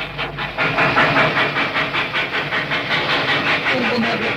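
Steam train running, a rapid, even beat of chuffs and clatter over a steady hiss.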